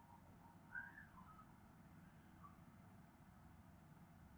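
Near silence: faint low room hum with a few short, faint high chirps about a second in.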